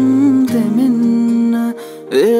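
A slow Sinhala pop ballad: a male voice sings a held, slightly wavering melodic line over soft guitar and sustained accompaniment. The voice drops away shortly before the end.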